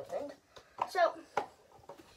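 A boy's voice in short snatches of speech, with a single sharp tap about one and a half seconds in.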